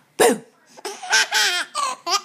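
A baby laughing: one sharp loud burst just after the start, then a string of short, high-pitched laughs through the second half.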